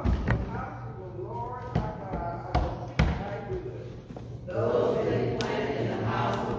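Voices speaking in a church, broken by several sharp knocks. From about four and a half seconds in, many voices speak together at once.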